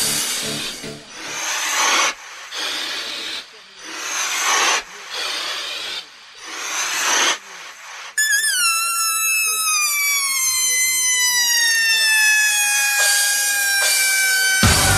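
Breakdown in a techno DJ set on a club sound system: the bass and kick drop out, and swelling rushes of noise build and cut off sharply about six times. About eight seconds in, a long held note with a wobble takes over and glides slowly downward.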